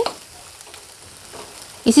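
Chopped tomatoes, onion and garlic paste frying in oil and butter in a stainless steel kadhai: a faint, even sizzle, with a metal spoon stirring and scraping the pan.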